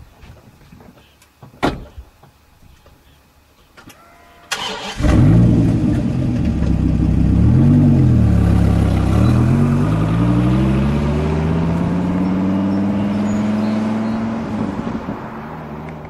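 Dodge Viper V10 cranking and catching with a loud start about four and a half seconds in, after a few clicks. It is blipped once, held at a slowly climbing rev, then eased back near the end.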